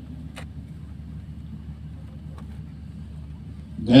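A pause in a man's speech, filled by a steady low background rumble, with a short click about half a second in. The man's voice comes back right at the end.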